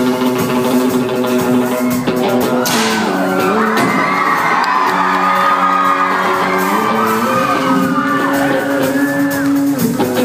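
Live rock band playing on stage: electric guitars holding sustained chords that change every few seconds, while the audience whoops and cheers over the music.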